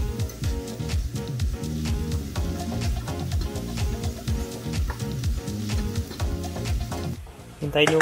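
Background music with a steady beat and bass line, dropping away about seven seconds in.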